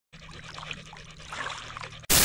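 Faint trickling water, small scattered drips over a soft hiss, with a low steady hum underneath.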